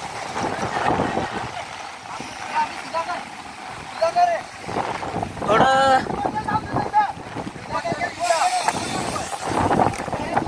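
People's voices calling out and talking over a steady wash of wind noise on the microphone and running floodwater, with one loud, held call about halfway through.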